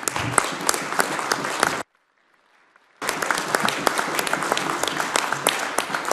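Applause from members in a debating chamber, many hands clapping. It cuts out suddenly for about a second near two seconds in, then resumes.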